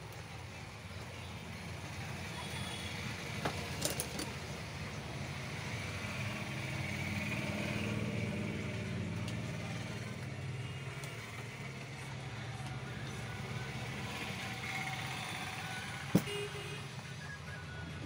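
Low rumble of a passing road vehicle, swelling to its loudest about halfway through and then fading. A few light clicks of hand tools on the router's housing, and one sharp tap near the end.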